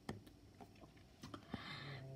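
One sharp click of a computer's pointing device as an on-screen button is pressed, followed by a few faint scattered ticks; otherwise quiet, with a faint hiss and low hum near the end.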